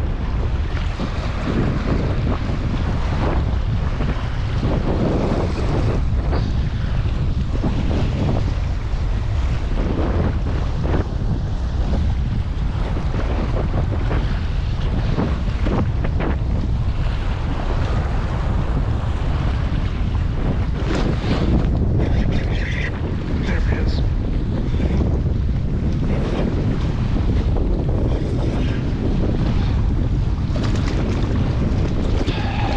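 Steady wind buffeting the microphone in a loud low rumble, with choppy water lapping and splashing against a kayak hull.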